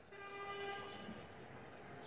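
A faint, distant horn holding one steady note for about a second near the start, then a fainter steady tone.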